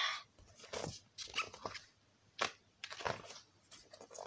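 A hardback picture book being handled and its page turned: several short paper rustles and light knocks and clicks.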